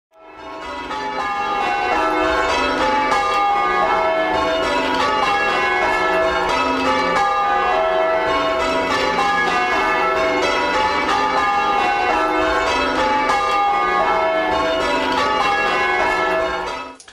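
Church bells rung in changes: a set of bells struck one after another in a fast, continually shifting sequence, fading in over the first couple of seconds.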